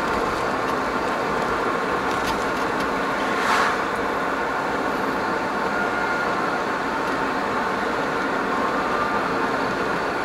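Steady engine and tyre noise of a moving vehicle heard from inside its cabin, with one brief whoosh about three and a half seconds in.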